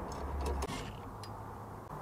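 Faint handling noise with a few light clicks, mostly in the first second, as a metal mud ring is fitted onto a steel electrical box.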